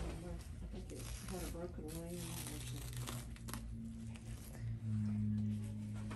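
Crinkling and tearing of a clear plastic adhesive dressing being peeled from the skin around a paracentesis catheter site, with a few sharp crackles. Faint voices are underneath.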